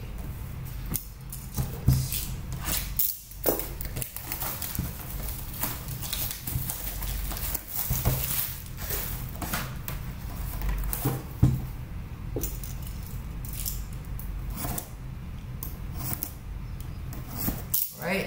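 Plastic shrink-wrap being peeled off a cardboard trading-card box, with the box handled and its flaps opened: irregular crinkling, rustling and light clicks and taps throughout, over a low steady hum.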